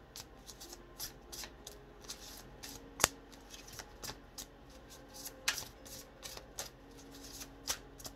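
A deck of Dark Goddess oracle cards being shuffled overhand, with soft repeated flicks of cards sliding off the deck and one sharp snap about three seconds in.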